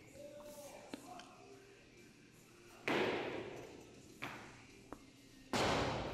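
Loaded barbell with bumper plates on a rubber lifting platform during a 113 kg power clean and jerk. About three seconds in a heavy thump comes with plates rattling and fades out. Near the end the bar is dropped from overhead, landing with a loud slam and a second hit on the bounce.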